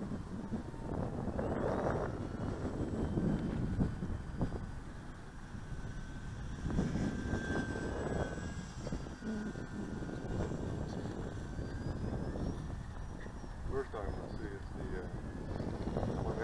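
Electric motor and propeller of an E-flite P-51 Mustang ASX radio-controlled model plane whining thinly in flight at a distance, the pitch sliding slightly as it passes.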